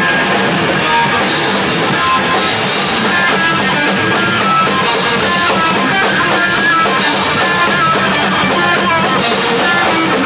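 A hardcore punk band playing live: distorted electric guitars and a drum kit, loud and steady.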